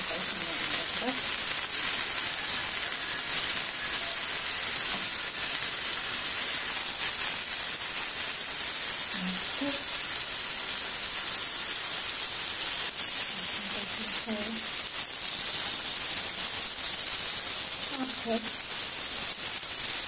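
Masa picadas topped with salsa sizzling on a hot griddle: a steady, even frying hiss.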